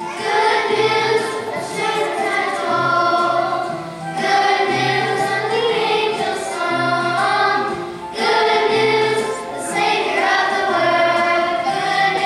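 Children's choir singing a song in phrases of a few seconds, with low sustained accompaniment notes underneath.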